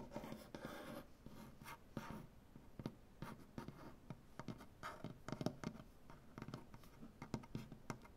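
Fingernails and fingertips tapping and scratching on a wooden butcher-block table top: soft, irregular taps and short scrapes, several a second, with a longer scratching stretch in the first second.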